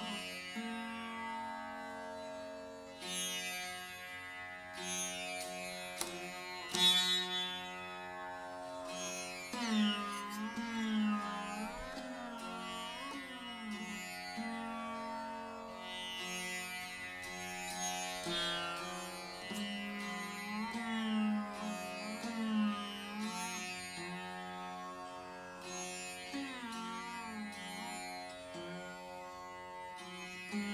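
Rudra veena playing a slow, unaccompanied raga passage in Hindustani classical style. Single notes are plucked every few seconds and bent into long glides up and down, ringing over steady sustained drone tones.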